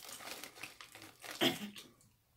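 A Flamin' Hot Cheetos bag crinkling as a hand rummages in it for chips, with a louder crackle about one and a half seconds in.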